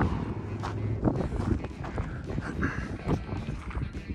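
Footsteps crunching on sandy desert dirt, about two steps a second, over a low steady rumble.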